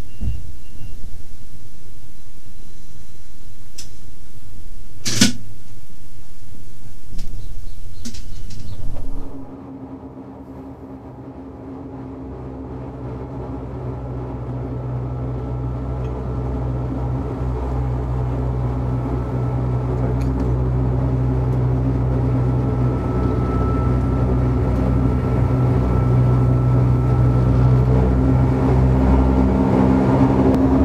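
Electric rack railcar Beh 2/4 no. 72 running uphill on the rack. For about nine seconds there is a loud rough rumble with one sharp click about five seconds in. The sound then changes abruptly to the railcar's steady whine of traction motors and rack gearing, several held tones over a low hum, growing gradually louder.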